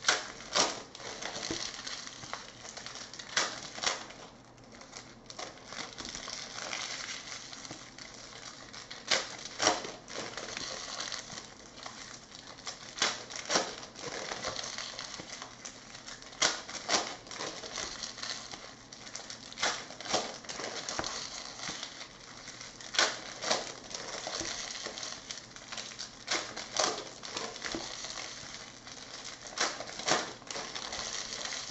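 Trading cards in plastic sleeves being handled and sorted on a table: sharp clicks and taps, often two close together, every second or few, over a soft rustle of cards sliding.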